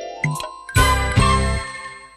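Closing music jingle: chiming notes, then two loud full chords with a deep bass about a second apart, ringing on and fading out at the end.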